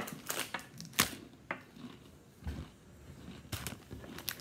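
Sharp crackles and clicks of a foil snack bag being handled, the loudest about a second in, with a dull thump about halfway through and a short cluster of crackles near the end.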